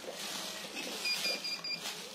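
Fabric and plastic packaging rustling as clothing sets are handled, with a faint high electronic beeping of about four short pulses in the middle.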